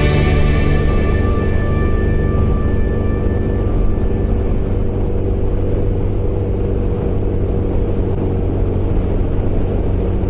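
Background music fading out over the first few seconds, leaving the steady running of a SYM MaxSym 400 maxi-scooter's engine at cruising speed with wind noise.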